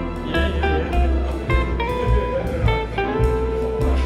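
Relaxing instrumental background music: a plucked melody, note by note, over a bass line.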